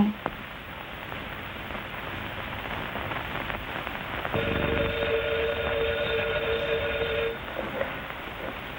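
A steady rumble builds, then a steam whistle sounds one long blast of about three seconds, a chord of close-pitched tones that cuts off sharply.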